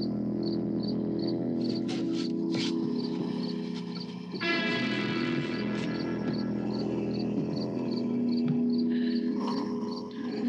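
Film soundtrack music with held low tones. It carries a high chirp repeating about three times a second, and four short sharp accents a little under two seconds in. From about halfway the music swells into a fuller passage.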